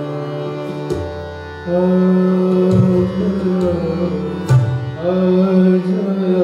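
Live Hindustani classical vocal music: long held, gliding sung notes over harmonium and tanpura drone, with occasional tabla strokes at a slow tempo.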